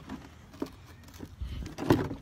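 Rumbling handling noise from a handheld phone being moved about, with a few faint knocks and a sharp, loud knock just before the end.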